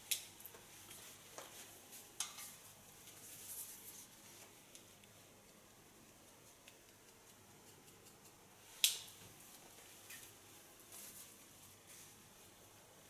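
Hairdressing scissors cutting wet hair: a few quiet, scattered sharp snips, the loudest about nine seconds in.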